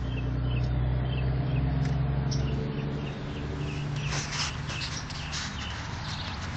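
A low, steady hum that swells and fades over the first three seconds, with short high chirps repeating a few times a second over it. Scuffing, rustling noises follow in the last two seconds.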